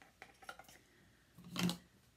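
Faint small clicks and taps as a cardboard cornstarch box is handled beside a glass mixing bowl on a table. One short, louder sound comes about a second and a half in.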